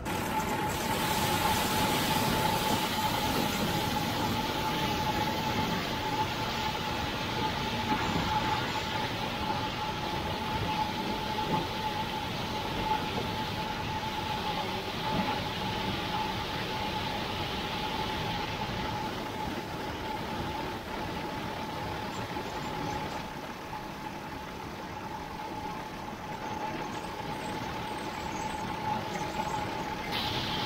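John Deere combine corn head harvesting standing corn: a steady mechanical rush from the running header with one constant whine held throughout.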